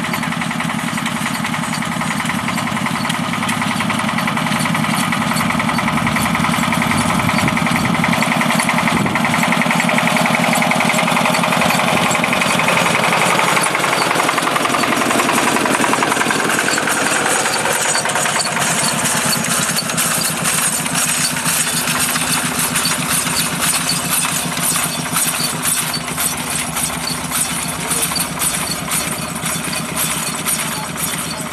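Air-cooled Porsche-Diesel tractor engine running with a rapid, hard diesel beat as it pulls a hay tedder past at close range. Its note drops as it passes about halfway through, and a fast rattle from the tedder's tines grows plainer as it moves away.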